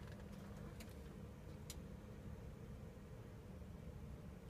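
Quiet office room tone: a steady low hum with two faint clicks, about one and two seconds in.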